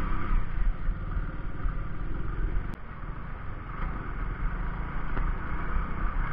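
Hero Splendor 100cc's single-cylinder four-stroke engine running steadily at low speed as the motorcycle rides over a rough, muddy dirt road. There is a brief click a little before halfway.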